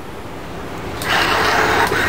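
Servo motors in an animatronic lion mask whirring as the mask is moved by its finger control, coming in about a second in with a steady whine.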